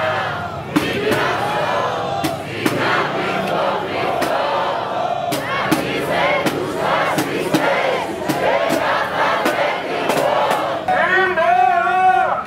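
A marching protest crowd chanting slogans together, with sharp claps keeping a beat about twice a second. One voice stands out clearly above the crowd near the end.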